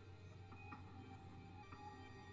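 Faint, soft music from an anime soundtrack, with steady held tones; close to silence.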